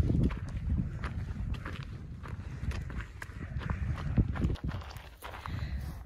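A hiker's footsteps on a dirt trail, with scattered irregular clicks and taps, over a steady low rumble on the microphone.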